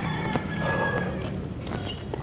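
Outdoor street background noise picked up while walking along a paved lane, with a few light knocks and a faint thin held tone in the first second.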